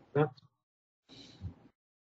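A man's voice saying a single word, then a brief, fainter sound about a second later.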